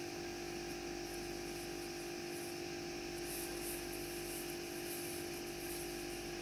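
Steady faint hum with a thin hiss behind it: quiet room tone.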